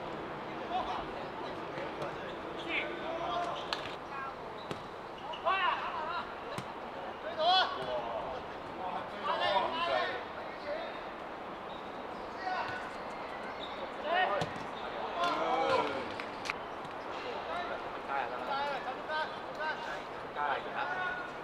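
Footballers shouting calls across the pitch, the loudest around the middle, with the short thuds of the ball being kicked over a steady outdoor background.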